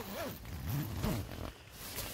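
Tent door zipper being pulled open, a rasping zip whose pitch rises and falls over about a second and a half.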